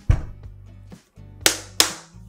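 A thud as a whole daikon radish is set down on a wooden cutting board, then two sharp smacks about a third of a second apart as a hand slaps the radish to check how firm it is.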